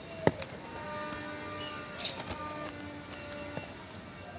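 A faint, steady held note from a distant wind instrument, sounding for about two and a half seconds from about a second in and then stopping, with a sharp click just before it.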